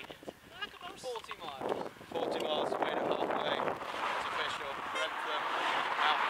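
Young people's voices talking indistinctly, with a steady rushing noise, likely road traffic or wind, coming up about two seconds in and holding.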